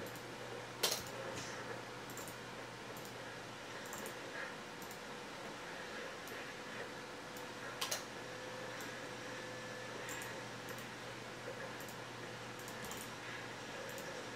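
Quiet room noise with a steady low hum, broken by a few sharp computer mouse clicks, the loudest about a second in and about eight seconds in.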